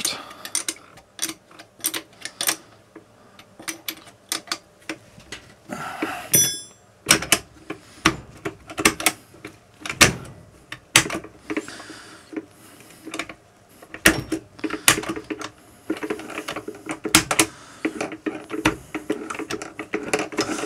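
Irregular metal clicks and clacks from a Simson M500 four-speed engine's gearbox being shifted through the gears by hand with the engine stopped, dry and unoiled, so the gears go in a little notchily. A brief metallic ring about six seconds in.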